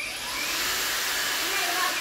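Makita cordless brushless angle grinder switched on and running at speed: a steady high whirring rush that starts suddenly.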